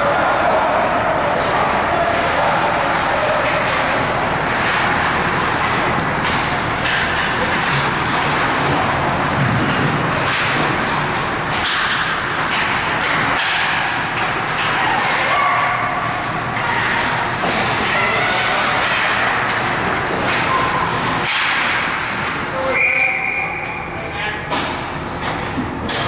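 Sound of an ice hockey game in an indoor rink: spectators' voices and calls over a steady wash of arena noise, broken by sharp clacks and scrapes of sticks, puck and skates on the ice.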